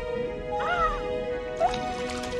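Background music, with a short, bending, squeaky cartoon creature call about halfway through and a brief rising squeak near the end, from the animated frog posing for the camera.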